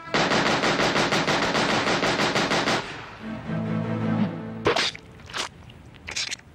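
Movie-soundtrack automatic gunfire: a rapid burst of about ten shots a second lasting nearly three seconds. It is followed by a low held tone and two sharp cracks.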